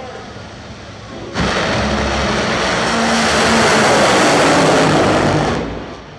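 Top fuel dragsters launching from the line: about a second and a half in, a sudden, very loud blast of supercharged nitromethane-burning V8 engines. It holds for about four seconds down the strip, then falls away near the end.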